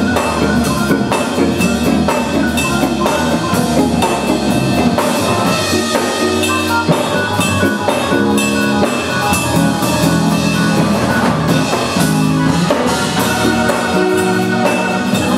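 Live instrumental gospel played by a trio: a drum kit keeps a busy, steady beat under sustained keyboard chords, with a hollow-body electric guitar.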